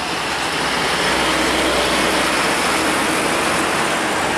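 UD Quester box truck driving past close by: its diesel engine gives a steady low note under a wide, even rush of tyre and road noise.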